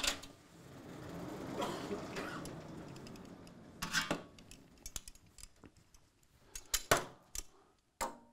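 Sliding lecture-hall chalkboard panels being moved by hand: a knock, a rumbling slide that lasts about three seconds, then clunks as the boards come to rest, with a few more knocks near the end.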